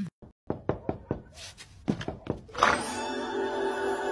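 A run of irregular knocks or taps for about two seconds, followed by steady background music with sustained tones that starts a little past halfway.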